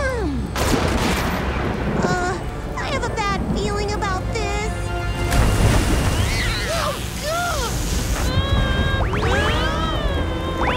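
Cartoon storm sound effects: a constant low rumble with a crashing wave of water about five seconds in, under the characters' wordless screams and yells and dramatic background music.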